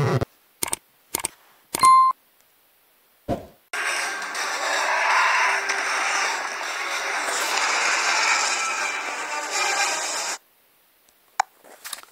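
Action-movie clip soundtrack playing on a phone: about six seconds of dense effects noise with music underneath, which cuts off abruptly. Before it come a few short clicks and a brief beep.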